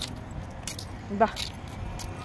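A few light, high-pitched jingling clicks over a quiet street background. A voice calls out once, briefly, about a second in.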